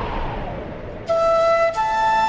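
A rush of noise fades over the first second, then a flute melody comes in suddenly with a long held note that steps up to a higher note near the end.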